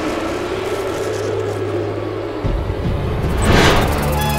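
Film sound effects for a magic transformation over a music bed: a steady low drone, a deeper rumble from about halfway, and a rising-and-falling whoosh near the end, the loudest part.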